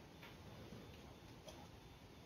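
Near silence with a few faint scratches and ticks of a marker pen writing on paper, one about a quarter second in and another about a second and a half in.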